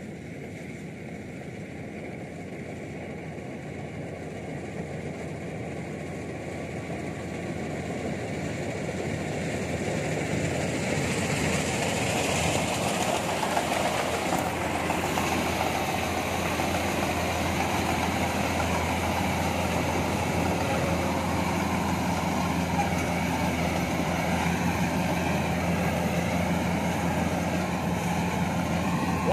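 Rice combine harvester running, its engine hum and cutting and threshing machinery together in one steady mechanical noise. It grows louder over the first ten seconds or so as the machine comes close, then holds steady.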